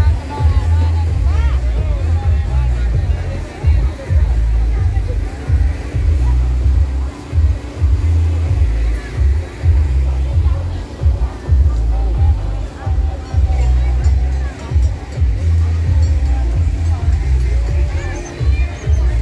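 Loud music with a heavy bass, mixed with the chatter of a crowd of people.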